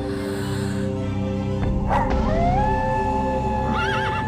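A wolf howl that rises and then holds one long note, starting about two seconds in, over slow, dark music with sustained tones. A short wavering cry joins it near the end.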